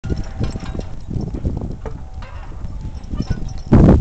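Team of Belgian draft horses walking in snow: irregular muffled hoof steps with harness chains and hardware clinking. Just before the end a sudden loud rush of wind on the microphone comes in.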